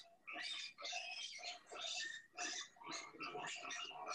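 Piglets squealing faintly in short, high-pitched bursts, about two a second, as they crowd in to eat black soldier fly larvae.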